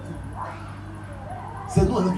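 A man's voice through a PA microphone, faint about half a second in, then loud near the end, over a steady electrical hum.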